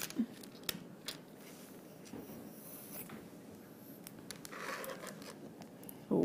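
Quiet handling noises: a few light clicks and taps, and a short rustle a little before the end, as a small silver pendant is picked up and handled at a desk.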